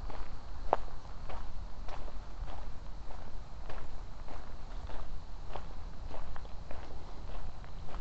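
Footsteps on a fine gravel trail at a steady walking pace, about three steps every two seconds, over a steady low rumble.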